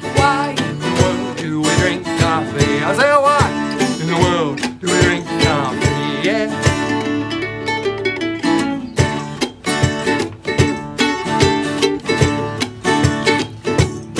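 Ukulele strummed along with an acoustic guitar, playing an upbeat instrumental passage between verses of a song.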